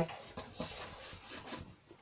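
Faint scrubbing of a paintbrush working paint into canvas, a few soft strokes that die away near the end.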